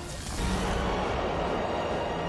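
Tense background music with a rushing noise that swells in about half a second in and holds, over a low steady tone.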